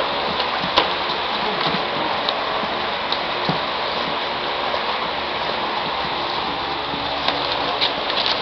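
Steady hiss of gym room noise with a few faint, brief knocks from padded sparring gear as two children exchange punches and kicks.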